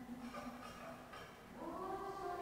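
Slow church music in held notes: a low sustained note fades away just after the start, and after a quieter stretch a new, higher note slides up into place near the end.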